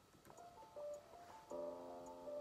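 Faint hip-hop instrumental beat playing back: a quiet line of sustained synth-like notes, joined about halfway through by a fuller chord, over faint regular ticks.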